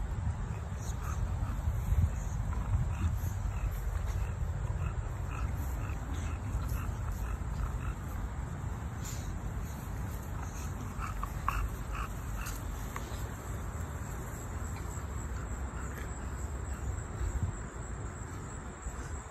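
Wind rumbling on the phone microphone, with a faint steady high insect trill and scattered small faint chirps or squeaks, a few more of them about two thirds of the way through.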